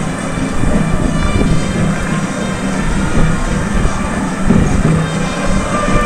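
Stadium atmosphere from a football match broadcast: a loud, steady din from the crowd with music in it, and no commentary.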